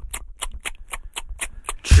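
Quick, evenly spaced ticking percussion, about six or seven clicks a second, over a low bass: the rhythmic intro of a podcast theme song, just before the vocals come in.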